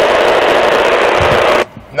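Loud static hiss from a CB radio's speaker, held for about a second and a half and then cutting off suddenly.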